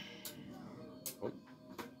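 Hornby TT120 Class 08 shunter's small electric motor running at low speed with a faint steady hum, with three light clicks of its wheels on the track about a second apart.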